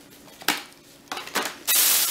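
A large clear plastic bag rustling and crinkling as hands rummage inside it: one sharp rustle about half a second in, a few shorter ones, then loud, continuous rustling near the end.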